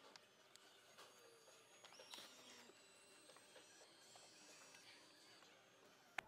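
Very faint whine of the Maybach EQS rear seat's electric motors as the seat moves into full recline, with a few soft clicks; otherwise near silence.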